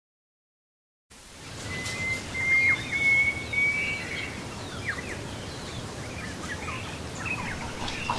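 Silence for about a second, then outdoor ambience: a steady background noise with songbirds calling, one long level whistled note and several short falling chirps.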